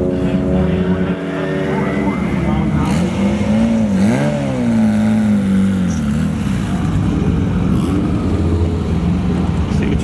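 Turbocharged Honda del Sol drag car's engine running at low revs as the car creeps forward, with the revs swelling and dropping back a couple of times about four seconds in.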